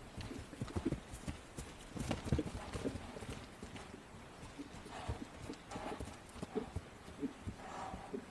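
Hoofbeats of a horse moving over grass turf: a run of irregular, dull thuds.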